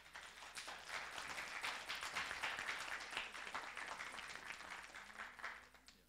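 Audience applauding, many hands clapping together; the applause builds over the first second, holds, and dies away shortly before the end.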